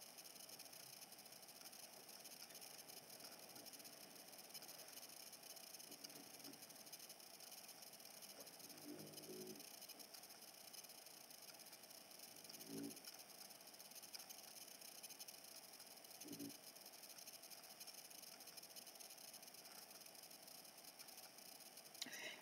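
Near silence: faint steady room hiss, with three faint short pitched sounds about nine, thirteen and sixteen seconds in.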